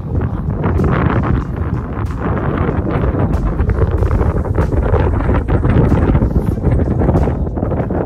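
Wind buffeting a phone's microphone: a loud, continuous low rumble with scattered small clicks.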